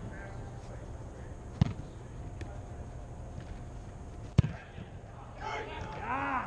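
Two sharp thumps of a soccer ball being struck, about three seconds apart, the second louder.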